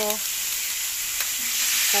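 A steady background hiss, with a faint click a little after a second in.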